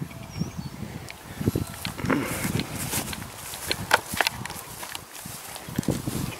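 A horse close to the microphone, sniffing and moving: irregular short knocks and scuffs with a few brief breathy snuffles.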